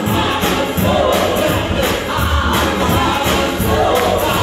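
Gospel singing by several voices into microphones, amplified through a church PA, over instrumental backing with a steady beat.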